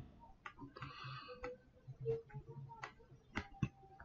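Faint, irregular clicks of computer input over a low hum, about eight in four seconds, as the on-screen lesson page is changed.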